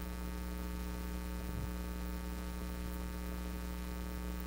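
Steady electrical hum, a low drone with many even overtones, holding at one level throughout.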